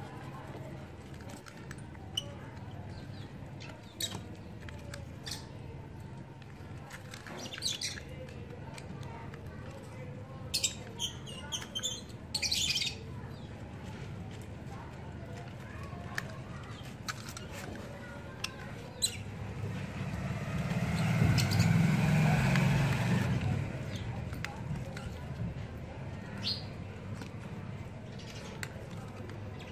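Faint scattered ticks and scrapes of a small blade shaving the bark of a mango scion into a wedge, over a steady low background hum. A few bird chirps sound around the middle, and a louder swell of noise builds and fades for a few seconds near the end.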